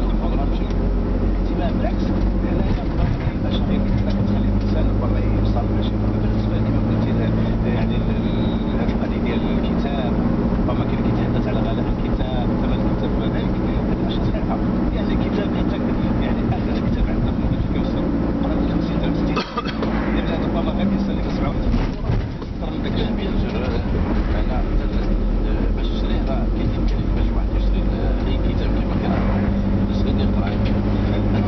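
Car engine and road noise heard from inside the cabin while driving, a steady low hum, with two brief dips in level about twenty seconds in.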